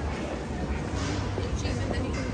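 Busy pedestrian street ambience: indistinct chatter of passers-by over a steady low rumble.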